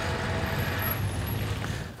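Steady outdoor background noise with a low hum underneath, the kind left by distant engines or traffic.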